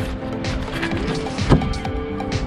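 Background music with steady sustained tones, and a single sharp knock about one and a half seconds in.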